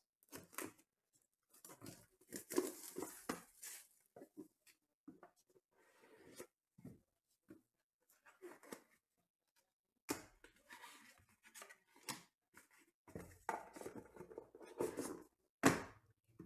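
Knife slicing the plastic shrink wrap of a trading-card box, then crinkling plastic and the box and cards being handled, in short scattered scrapes. A sharp click comes near the end.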